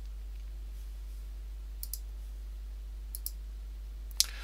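Computer mouse button clicked twice, each click a quick press-and-release pair, about two seconds in and about three seconds in, over a steady low electrical hum.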